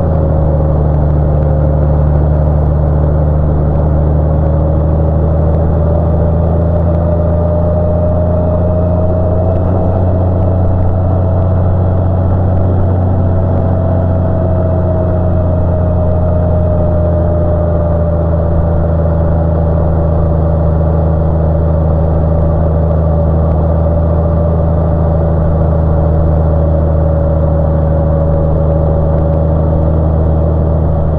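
Touring motorcycle cruising at a steady speed: a constant engine drone under wind and road noise, with a faint whine that rises a little and falls back about halfway through.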